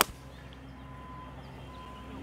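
A golf iron striking the ball: one sharp crack at the very start, on a low draw shot, followed by quiet outdoor background with a faint steady hum.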